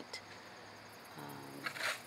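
A woman's short, low hum in a pause between sentences, followed by a quick breath in near the end.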